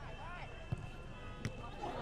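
Faint pitch-side ambience with distant players' voices, and two short sharp knocks of a football being struck, about a second apart, as a long-range shot is hit and goes wide of the goal.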